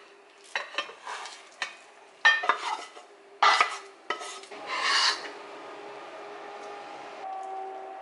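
Wooden spatula scraping and knocking against a frying pan as food is slid and scraped out onto a plate, in a run of short scrapes and clatters over the first five seconds. A steady hum is left on its own after that.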